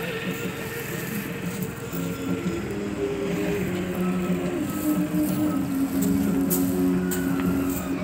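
Background music with held melodic notes that step from one pitch to another, over a few light percussive clicks.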